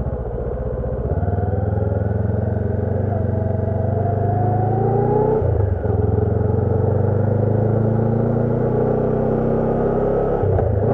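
2013 Honda CB500X parallel-twin engine with a Staintune exhaust, pulling away under acceleration. Its pitch rises for a few seconds, breaks briefly about five and a half seconds in as at a gear change, then holds steady.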